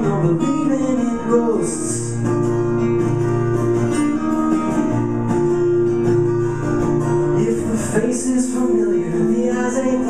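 Two guitars playing an instrumental passage of a song live, strummed and picked notes that change and hold, heard through a small camcorder's built-in microphone.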